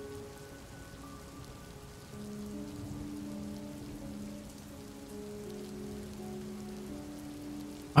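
Quiet, steady rainfall under a soft background music track of long held notes that change slowly.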